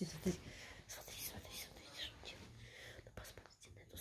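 Soft whispering, with a few faint clicks about three seconds in.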